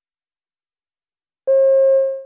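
Silence, then a single steady electronic beep starting about a second and a half in, a mid-pitched tone: the cue tone that marks the start of a listening-test extract.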